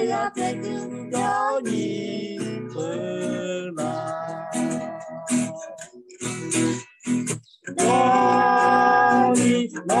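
A woman and a man singing a Lahu-language song together to a strummed acoustic guitar, heard over a video call, with a long held note near the end.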